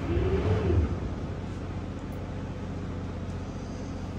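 A tour boat's engine running steadily, heard from the wheelhouse as a low hum, with a brief louder swell in the first second whose pitch rises and then falls.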